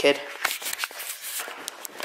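Footsteps of sneakers on a bare concrete floor: a few short, light taps and scuffs with rustling.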